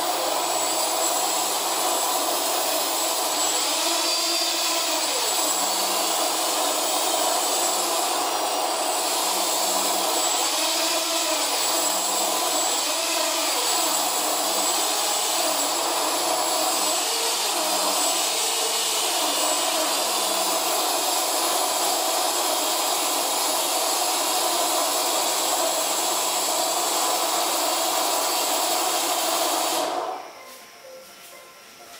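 1000Kv brushless motors of a homemade quadcopter, driven by BLHeli ESCs, running as a steady high whine, their pitch rising and falling several times as the throttle is worked.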